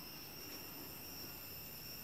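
Faint steady background hiss with a few thin, constant high-pitched tones: the room tone of a quiet room.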